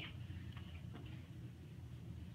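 A few faint clicks and taps from shadow puppets being handled behind the screen, over a steady low hum.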